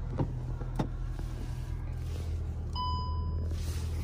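Inside the Cupra Formentor's cabin: a steady low hum, a couple of sharp clicks near the start, and one short electronic warning chime about three seconds in.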